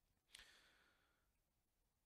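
A man's faint breath, a sigh-like sound into the microphone about a third of a second in that fades away over about a second; otherwise near silence.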